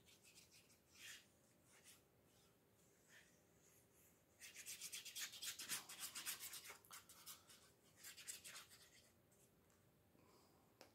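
Fine plastic tip of a liquid glue bottle drawn along a strip of paper: faint, rapid scratchy rubbing for a couple of seconds mid-way, then a shorter run of it near the end.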